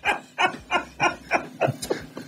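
A dog barking in a quick, steady run, about three barks a second. The barks grow shorter and weaker near the end.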